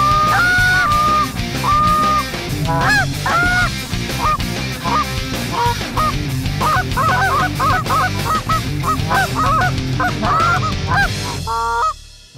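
Canada geese honking: a few longer honks at first, then from about six seconds in a flurry of rapid, overlapping honks and clucks, cutting off abruptly near the end.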